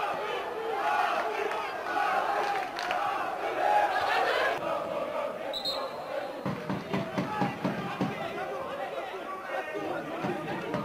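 Football stadium crowd: many spectators' voices shouting over one another, loudest in the first half, with one short high tone a little past halfway and scattered nearer voices after that.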